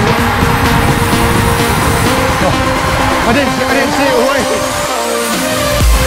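Electronic dance music building up: a long rising sweep over the second half, with the bass cutting out briefly near the end before it comes back in.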